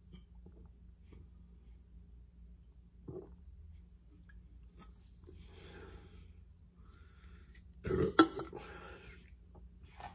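A man drinking from a can of carbonated energy drink: faint swallows and breaths. About eight seconds in comes a short, loud burst of mouth and breath noise with a sharp click, trailing off into a breathy exhale.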